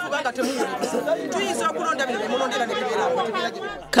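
Several people talking at once, their voices overlapping, a woman's voice among them.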